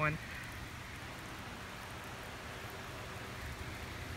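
Steady hiss of light rain, with a low rumble underneath.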